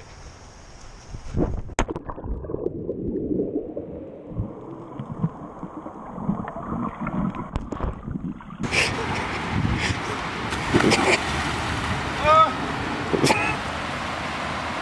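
A splash as the GoPro goes into the water, then muffled gurgling and rumbling from the camera while it is submerged. About two thirds of the way in the sound switches abruptly to open air: water sloshing and wind, with a short yell near the end.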